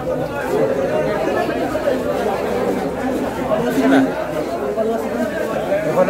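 Several people talking at once, indistinct overlapping chatter with no single clear voice.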